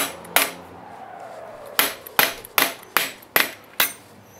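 Hammer striking a small chisel to carve openwork into a forged metal spur piece held in a vise. There are two blows at the start, a pause of over a second, then six quick, even blows, each with a short metallic ring.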